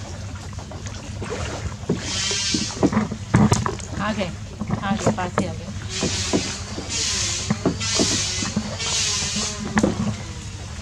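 A wooden oar stroking through the water of a small hand-rowed boat: a swishing splash at each stroke, about once a second in the second half. Voices talk briefly in the middle.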